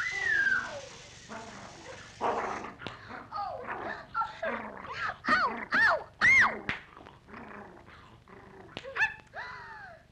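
Cartoon seltzer bottle spraying with a hiss for about a second and a half, followed by a run of high yelping cries that rise and fall in pitch, several in quick succession in the middle and a falling one near the end.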